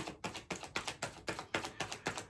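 Tarot cards being shuffled by hand: a quick, even run of soft card clicks, about five a second.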